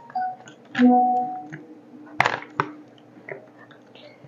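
Coloured pencils clicking and rattling against one another on a tabletop as a hand feels through a pile of them, with a few sharper clacks, the loudest a little after two seconds. A brief hum of a voice about a second in.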